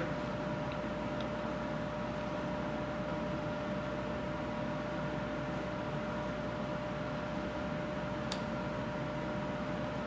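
Steady room hum and hiss with a faint steady tone running through it, and one faint click about eight seconds in. No distinct knife strokes stand out.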